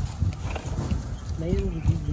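Low, irregular knocking and rumble, with a short voice sound about three-quarters of the way in.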